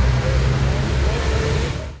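Roadside traffic noise: a steady low rumble with hiss that fades out near the end.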